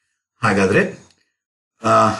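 A man's voice: a brief spoken utterance about half a second in, then a pause, then talk resumes near the end.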